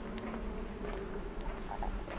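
Quiet ambience with a faint, steady buzzing hum over a low rumble, broken by a few soft clicks and knocks.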